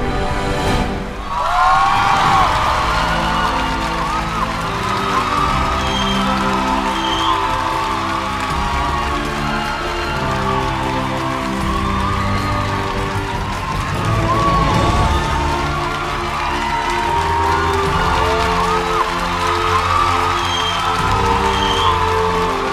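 Dramatic stage entrance music with an audience cheering, whooping and applauding over it, with a heavy hit about a second in.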